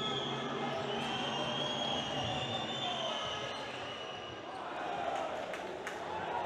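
Game sound from a basketball court: a ball bouncing on the hardwood floor, with long high squeaks and crowd noise in the arena, and a few sharp knocks near the end.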